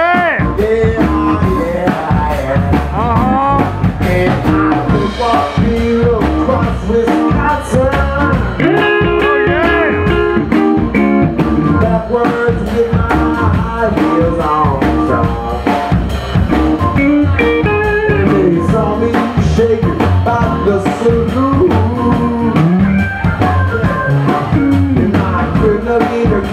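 Live blues band playing: electric guitar over sousaphone and drum kit, with a steady beat.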